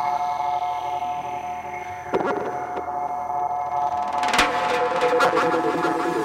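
1990s Goa trance: a held electronic synthesizer chord without a steady beat, broken by sharp drum hits about two seconds in and again just past four seconds, the second the loudest. After that hit a lower, wavering synth line comes in under the chord.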